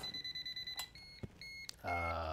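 Pen-style non-contact voltage tester sounding a steady high beep at a lamp socket, the sign that it detects voltage there. A click comes a little under a second in and the steady tone stops, after which the tester gives only short, separate beeps.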